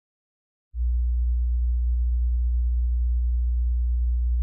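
A steady, very low electronic tone, a deep pure hum, starting just under a second in and holding at one pitch.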